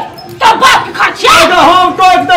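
Loud, heated speech in an argument between a man and a woman, the words coming in short, sharp bursts.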